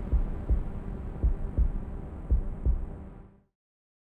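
Heartbeat-style sound, low double thumps about once a second over a steady low hum, cutting off suddenly about three and a half seconds in.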